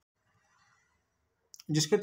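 Near silence for most of the time, then a brief click and a man beginning to speak in Hindi near the end.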